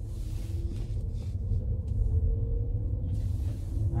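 Cabin sound of a 2011 Toyota Estima 2.4 hybrid pulling away in electric mode with the petrol engine off: a low rumble of tyres and drivetrain, growing slightly louder, with a faint whine that rises a little in pitch as it gathers speed. It is really nice and quiet.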